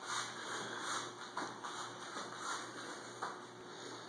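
Soft shuffles and taps of hands being walked across a rubber gym floor, about two a second, with a couple of sharper ticks, over a low steady room hum.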